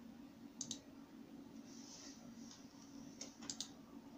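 Faint computer mouse-button clicks: a quick pair about half a second in, then a fast run of three or four a little after three seconds, over a steady low hum.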